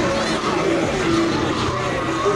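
Hummer H2 engine running at low speed as the truck creeps forward, mixed with voices and music from the crowd.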